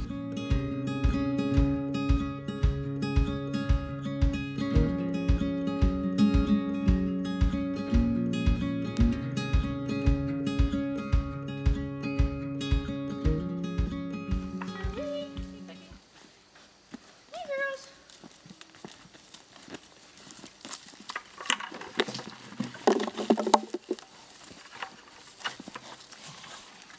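Acoustic folk instrumental music with a steady beat, which stops about sixteen seconds in. Then come pigs feeding at a trough, with a few short grunts and a louder burst of calls near the end.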